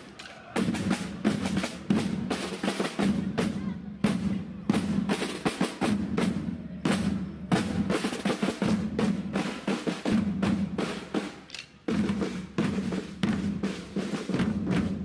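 A group of marching drums, snare and bass, playing a parade beat with rolls. The beat breaks off briefly just after the start and again near the end.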